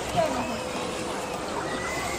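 A short call from a California sea lion just after the start, over a steady murmur of people's voices.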